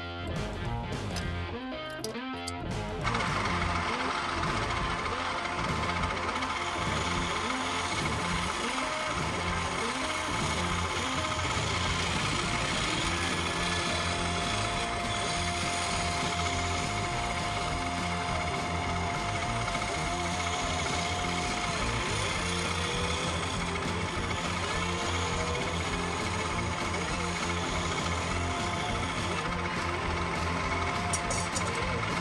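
Wood lathe switched on about three seconds in, then running steadily while a hand tool cuts the spinning wooden blank, with a mechanical rattle and hum.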